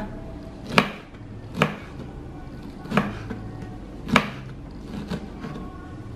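Kitchen knife slicing pineapple into thin pieces, the blade knocking on a plastic cutting board: four clear knocks about a second apart, then a few fainter ticks near the end.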